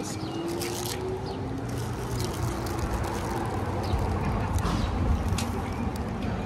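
Wind buffeting a phone microphone in a steady low rumble, with scattered short crinkles of a paper pastry wrapper being handled.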